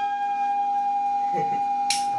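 Indian banjo (bulbul tarang) holding one steady sustained note as the drums stop, with a sharp click near the end.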